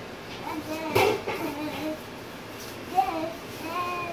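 A young girl singing a made-up song without clear words, her voice sliding up and down, with a sharp knock about a second in.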